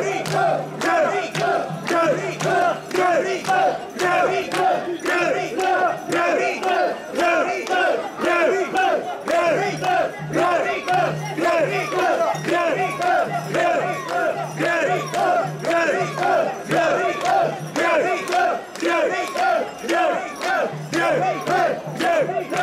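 A crowd of mikoshi carriers shouting a rhythmic chant in unison as they shoulder a portable Shinto shrine, the call pulsing about twice a second.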